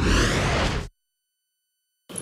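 Broadcast transition sound effect: a whoosh over a deep low rumble, lasting just under a second, that cuts off suddenly.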